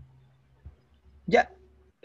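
A single short spoken "yeah" about a second in, over a faint low hum; otherwise quiet.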